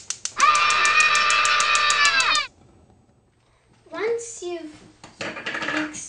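Gas stove's spark igniter clicking rapidly, about ten clicks a second, as the burner is lit, stopping about two and a half seconds in. A child holds one long high sung note over the clicking, and a child's voice follows after a short quiet gap.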